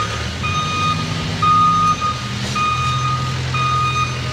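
Construction vehicle's back-up alarm beeping, four half-second beeps about a second apart at one steady pitch, over the low steady drone of its engine.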